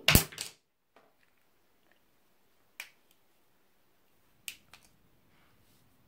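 Handling noise from the camera being moved and set up: a sharp knock with a brief rustle at the start, then a few light clicks about three and four and a half seconds in.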